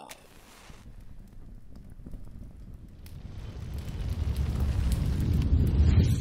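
A deep rumbling whoosh sound effect for a flaming logo outro, swelling steadily louder over several seconds.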